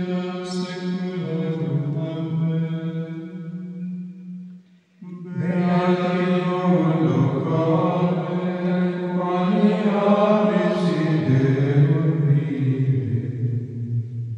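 Carthusian monks chanting a psalm in unison plainchant, male voices holding long notes, with a short pause for breath about five seconds in before the next verse begins.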